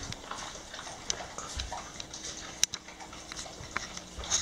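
Dogs eating from metal bowls on a tiled floor: irregular small clicks and clinks of muzzles and food against the bowls, with one sharper clink about halfway through.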